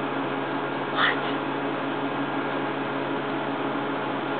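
Steady hum and hiss of aquarium equipment, with one brief high squeak about a second in.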